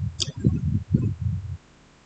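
A man's low, muffled mumbling under his breath, broken into short syllables, which stops about one and a half seconds in. There is one short click about a quarter of a second in.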